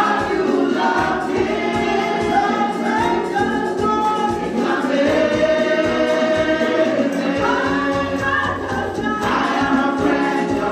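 Women's gospel vocal group singing together into microphones, holding long notes in harmony.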